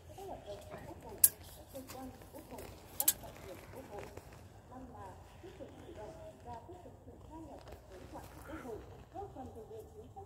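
Faint distant voices talking, with two sharp clicks, the first just over a second in and the second about three seconds in.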